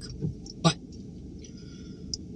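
Near-quiet steady low background hum inside a car, broken once, about two-thirds of a second in, by a single short spoken word ("but").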